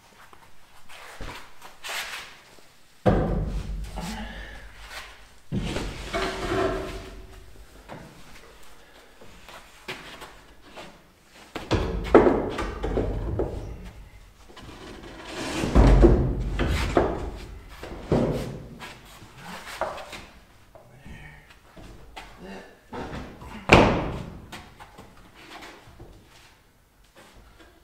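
A large plywood wall panel being worked into a tight opening in a wooden trailer frame: irregular thumps and knocks of wood against wood, with scraping and sliding between them. The sharpest knock comes near the end.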